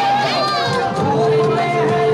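A crowd of children's voices, many calling out and chattering at once, with music underneath whose steady held notes come in about a second in.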